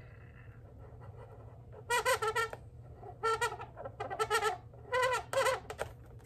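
Black marker drawing on an inflated latex balloon, squeaking in a string of short, high squeals as the eye ovals are drawn, starting about two seconds in.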